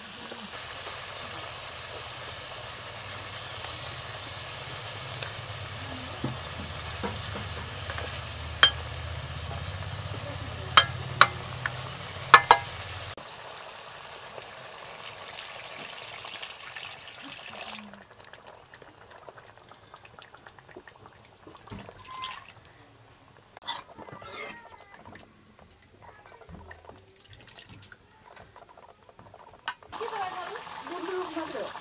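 Fish curry sizzling and bubbling in a metal kadai over a wood fire, with a few sharp clicks a little past the middle of the first half. Water is then poured from a clay jug into the hot curry, followed by quieter simmering with a few scattered stirring sounds.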